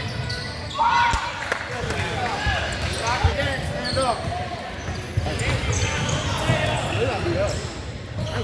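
A basketball bouncing on a hardwood gym floor during play, with voices of players and spectators calling out in a large gym.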